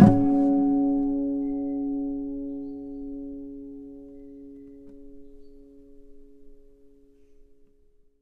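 Acoustic guitar's final chord of the outro music, struck once and left to ring, fading away slowly over about seven seconds.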